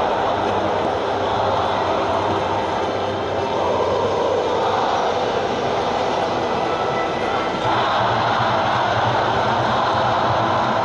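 Stadium crowd of football supporters cheering, a steady wash of many voices that gets louder about three-quarters of the way through.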